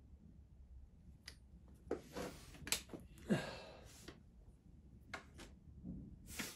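Faint handling noise at a workbench: a few light clicks and taps as a soldering iron and wire are handled, one sharp tick about a second in and a small cluster near the end.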